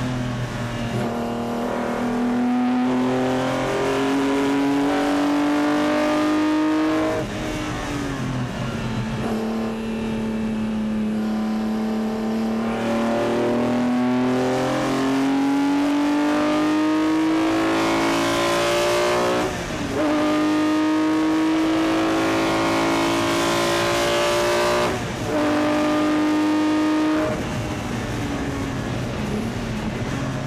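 BMW M1 Procar's racing straight-six heard from inside the cockpit, pulling hard with its note climbing through the gears, broken by quick upshifts about two-thirds of the way in and again near the end. The engine eases off about a quarter of the way in, and drops away again just before the end as the driver lifts.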